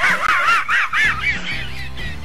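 Muttley, the cartoon dog, snickering: his wheezy laugh, a quick run of rising-and-falling wheezes, about five a second, that fades out near the end.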